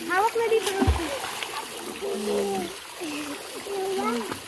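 Pool water splashing as people move about in it, with voices calling and talking over it. A dull thump comes a little under a second in.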